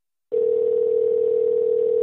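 Telephone ringback tone: one steady ring of about two seconds, starting a third of a second in, the sound of a call ringing through on the line before it is answered.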